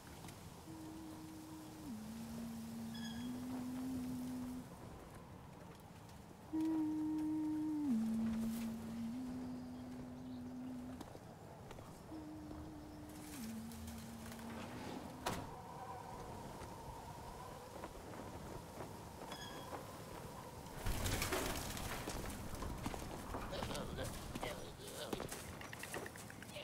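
A voice humming a slow, wordless three-note tune: a higher held note steps down to a low note and then up slightly. The tune is heard three times with pauses between. Near the end a louder rustling noise comes in.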